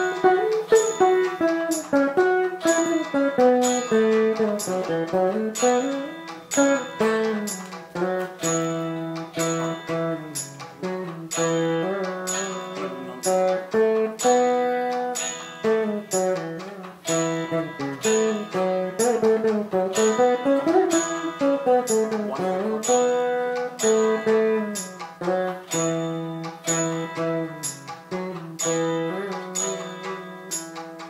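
Saraswati veena played solo in Carnatic style: plucked melody notes bent and slid in pitch along the frets (gamakas) over a steady drone, with sharp, regular plucks throughout.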